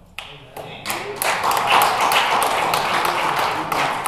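Audience applauding: it starts just after the beginning, fills out within about a second, and begins to die away near the end.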